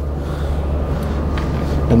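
Steady low hum and hiss of background noise, with one faint click about one and a half seconds in.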